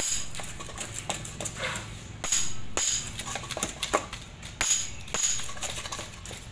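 Metal rods knocking and clinking irregularly as a sand mix is tamped into plastic dumbbell molds: a run of sharp strikes, several with a high metallic ring.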